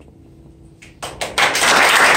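A small audience breaks into applause about a second in: a few scattered first claps, then many hands clapping together, loud and steady.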